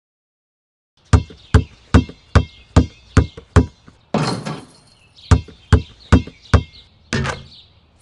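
Cartoon sound effect of a basketball being dribbled on pavement: a steady run of seven bounces, about two and a half a second. A short swishing rush follows, then four more bounces and a sharper double hit near the end.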